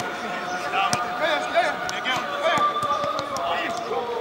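A football being kicked in passing drills: a sharp thud about a second in and several fainter ones, over players' shouted calls and chatter.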